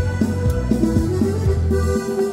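Piano accordion playing an instrumental passage: a quick melody on the treble keyboard over a steady beat of bass notes.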